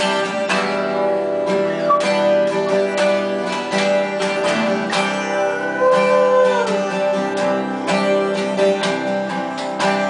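Two acoustic guitars strumming chords together, one of them a twelve-string.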